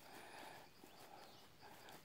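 Near silence: faint outdoor background hiss with no distinct sound.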